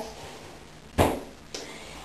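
A single sharp knock about halfway through, dying away quickly, followed by a faint click.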